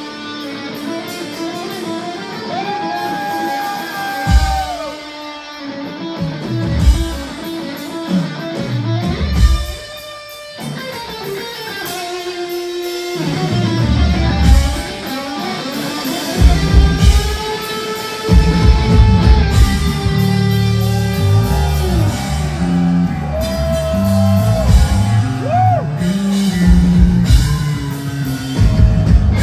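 Rock band playing live: electric guitar holding long notes with bends over bass and drums. The band comes in fuller and louder about two thirds of the way through.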